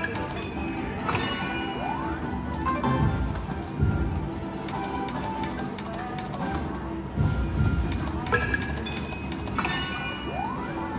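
Video slot machine playing its electronic music and sound effects as the reels spin, with clicks and a few short rising tones.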